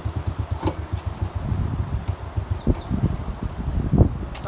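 A motorcycle engine idling with a low, rapid putter.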